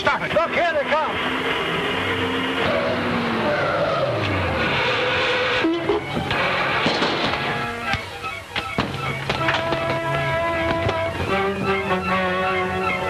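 Orchestral film score playing over car engine noise.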